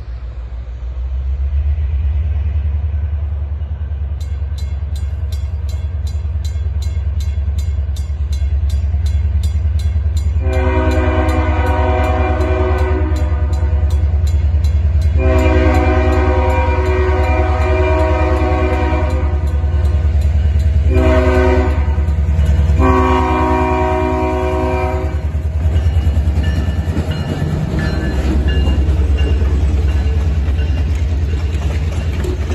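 Diesel locomotive of a passenger train approaching a grade crossing with a heavy low engine rumble, and its horn sounding the crossing signal: long, long, short, long. A fast regular high-pitched ticking runs under it from a few seconds in. Near the end the passenger cars roll past.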